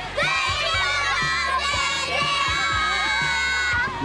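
A group of young girls cheering and screaming together in one long held shout that stops near the end, over background pop music with a steady beat.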